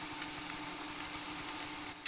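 Two light clicks from handling the open plastic base of a USB desk fan, a sharp one just after the start and a softer one about half a second in, over a faint steady hum.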